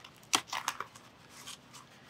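Protective packaging and tape being pulled and torn off a bike frame: a few short rips and crinkles in the first second, then fainter rustling.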